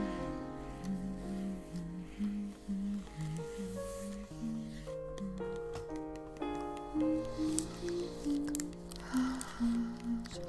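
Soft, slow piano music, one note after another over a low held bass, with faint crackling and squishy ASMR trigger sounds layered over it and a short hissy rustle near the end.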